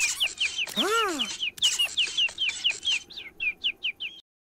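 Cartoon cuckoo-clock chick chirping in a fast run of short, falling chirps, about five a second. A tone that rises and then falls sounds about a second in.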